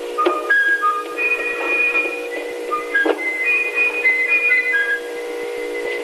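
A whistled tune of clean, held notes that jump from pitch to pitch, over a steady hum. Two sharp knocks come through, one just after the start and one about three seconds in.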